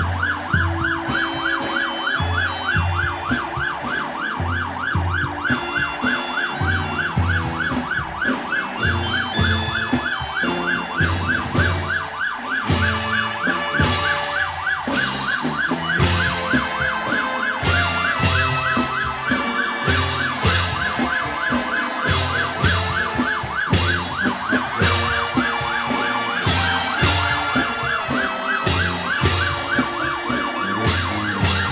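A vehicle siren sounding a fast yelp, about four rising-and-falling sweeps a second, without a break. Under it, band music with changing notes and a regular low drum beat.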